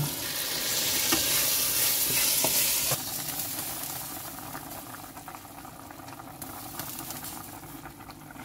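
Rice sizzling in oil in a stainless steel pot, stirred with a wooden spoon with small scraping ticks. About three seconds in it cuts off to a quieter, steady bubbling of stuffed courgettes simmering in a pot.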